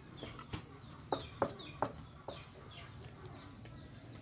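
Chickens clucking: four short sharp notes in the first two seconds, with high falling chirps scattered through.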